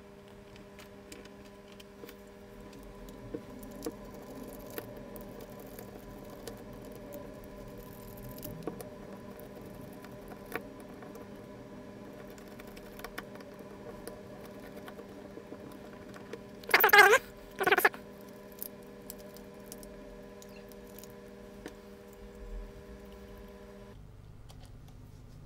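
Small clicks, taps and rustles of a screwdriver turning small screws and of hands handling a hard plastic instrument housing, over a faint steady hum. About two-thirds of the way through come two short, loud scrapes in quick succession.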